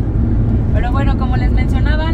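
Steady low road and engine rumble heard inside a moving vehicle's cabin, with a woman's voice starting under a second in.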